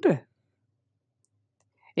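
A man's speaking voice trails off at the end of a phrase, followed by near-total silence for about a second and a half before he starts speaking again at the very end.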